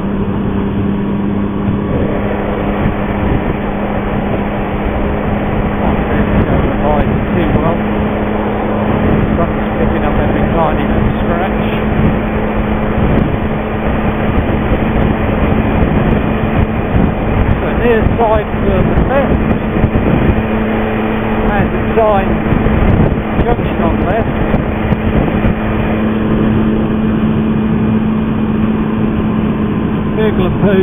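Motorcycle engine running at a steady cruising speed, its hum holding one even pitch, under loud wind rush on the rider's microphone.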